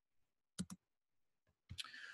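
Near silence broken by a quick double click about half a second in, then another short click and a faint hiss near the end.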